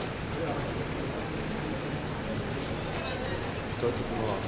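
Indistinct voices over a steady low rumble of outdoor background noise, with one short louder sound just before the end.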